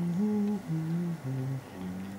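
A man humming a slow, low tune with closed lips, held notes stepping up and down in pitch with short breaks between them.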